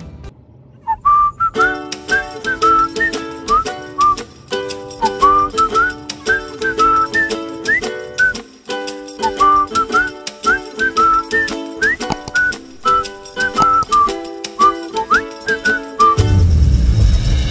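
Background music: a whistled melody with little pitch glides, over a steady rhythmic chordal accompaniment, starting about a second in.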